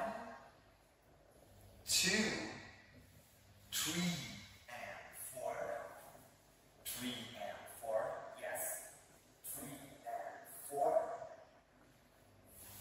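A man's voice making short wordless syllables and breathy puffs, about one a second, with short gaps of quiet between them.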